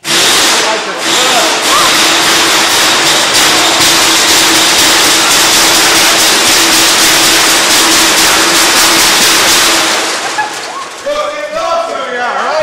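A sudden, very loud, harsh noise cuts in at once, with a steady hum underneath, and eases off after about ten seconds into overlapping voices.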